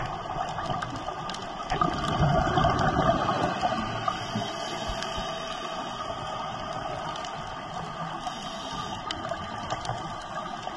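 Underwater ambience: a steady watery hiss with scattered faint clicks, and a louder rush of bubbling from about two to four seconds in.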